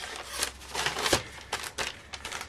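Paper envelopes and sheets of patterned paper being handled and shuffled on a stack: rustling and sliding, with several short sharp paper taps.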